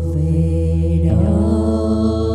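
A woman singing long sustained notes of a slow Vietnamese ballad over guitar and a steady low accompaniment; the pitch shifts about a second in.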